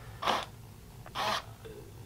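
Two short whirrs from a pair of small RC flap servos driven through a standard Y harness, about a second apart. The servos turn in opposite directions, the sign that one of them needs reversing.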